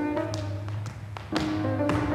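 Tap shoes striking a wooden floor in about five crisp, irregular taps over melodic classical-style music.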